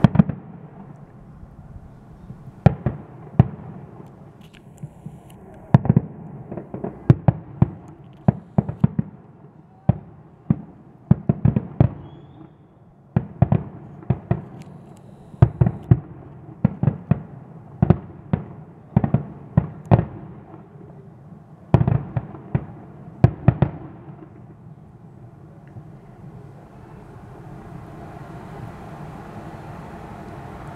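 Fireworks finale: aerial shells bursting in a rapid barrage of sharp bangs, often several a second in clusters. The bangs stop about 24 seconds in, leaving only a low steady background noise.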